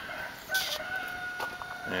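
A rooster crowing: one long drawn-out call held at an even pitch, with a short louder onset about half a second in.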